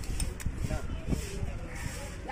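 Dull, irregular knocks of a seer fish and a large knife against a wooden chopping block, a few thumps and clicks in the first second or so, with voices in the background.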